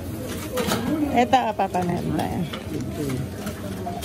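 Indistinct voices of nearby shoppers talking, with a few short clicks and rustles mixed in.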